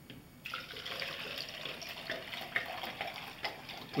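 Water pouring from a plastic gallon jug into the open, cut-off top of a soda bottle, starting about half a second in and running steadily with small splashes.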